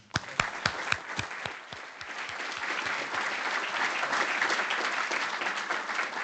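Audience applause: a few separate, close claps at first, then many hands clapping together in a dense, steady patter that grows louder.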